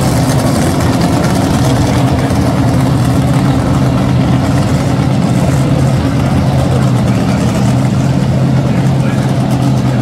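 Dragster engines idling at the starting line: a loud, steady low drone that holds the same pitch throughout.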